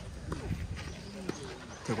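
Outdoor tennis-court ambience: faint background voices and a few scattered light knocks. A man's voice begins at the very end.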